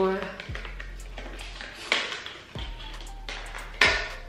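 Handling of a product package, with rustling and a few sharp crinkles, the loudest just before the end, over soft background music.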